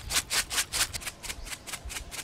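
Unhusked rice grains rattling out of a plastic bottle shaken in quick strokes, about five a second, and scattering onto sandy ground. The strokes thin out near the end.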